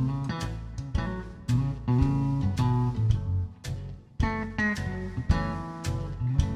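Blues band playing an instrumental passage with no singing: a hollow-body electric guitar plays plucked melody notes over strummed guitar, low bass notes and regular drum hits.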